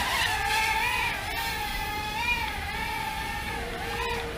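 VK330 micro foldable drone in flight, its brushed motors and small propellers making a steady whine that rises and dips slightly in pitch as the throttle changes.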